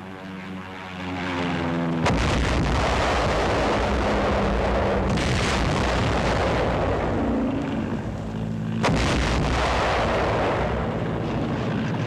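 Aerial bombing: a falling whistle over the first two seconds, then a heavy bomb explosion about two seconds in that runs on as continuous rumbling blasts, with a second explosion near nine seconds.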